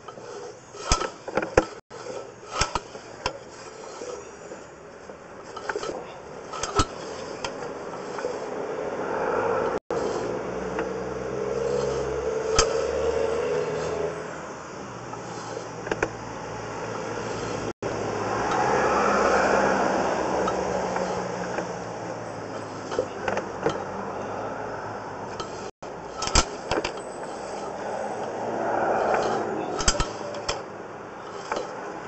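A sewer inspection camera's push cable being pulled back out of the line by hand, with scattered clicks and scrapes. Several swells of rushing noise a few seconds long come and go.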